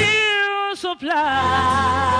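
Gospel music with a singer holding one high, clean note over a thinned-out backing. About three quarters of a second in, the note bends down and breaks off briefly, then comes back wavering as the full band and bass return.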